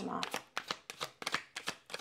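A tarot deck being shuffled by hand: a rapid series of short card snaps, about five a second.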